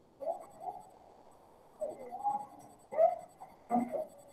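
Pen or pencil writing on paper close to a laptop microphone: irregular scratchy strokes in short runs, the loudest about three seconds in and just before the end. A faint steady high whine sits underneath.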